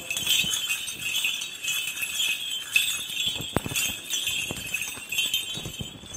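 Small bells on a swung Byzantine censer jingling, with a few sharper clinks of its chains and cup.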